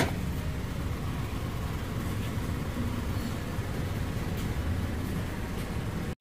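Steady low background hum and rumble of a store interior, with a single light knock at the very start as a small brass pitcher is set down on a shelf.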